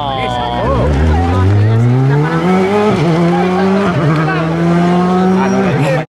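Rally car engine pulling hard as the car accelerates away, its pitch climbing steadily, with two quick drops in pitch about three and four seconds in as it shifts up a gear.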